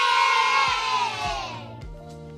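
The tail of the intro music: a crowd-cheer sound fading out over about a second and a half, with a soft low beat thumping underneath about every half second.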